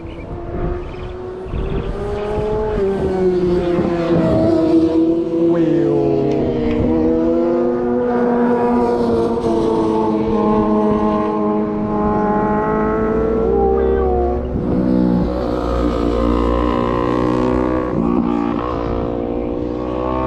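A car engine running hard, its pitch sweeping up and down as it revs, growing louder over the first few seconds and then holding.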